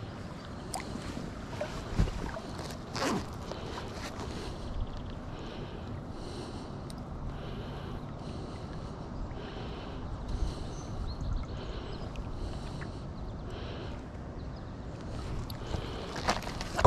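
Steady wash of river water around a wading angler, with low wind rumble on the microphone and a couple of light knocks about two and three seconds in. Faint high chirring repeats about once a second.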